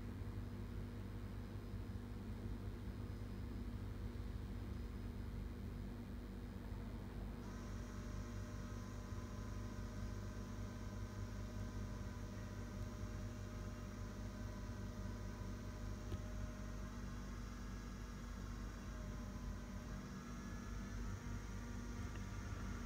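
Steady low electrical hum with a faint hiss from a desktop computer rebooting. Faint, steady higher-pitched whine tones come in about seven and a half seconds in.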